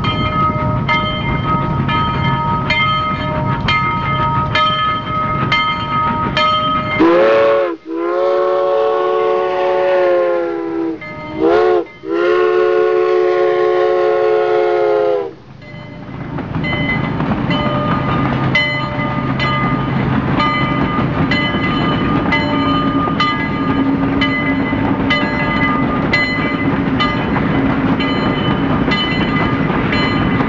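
A train rolling along with a steady clicking of wheels over rail joints, one or two clicks a second. Its multi-note air horn sounds a series of blasts in the middle, ending with a long one.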